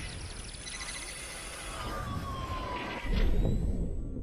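Cinematic logo sting made of sound effects: a siren-like falling tone over rapid high ticking, then a deep boom a little after three seconds in.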